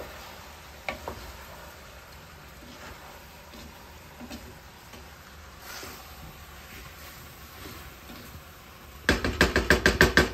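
A wooden spoon stirring rice, sausage and chicken in an aluminum pot, with soft scraping. Near the end the spoon knocks rapidly and loudly against the pot, about nine ringing knocks a second.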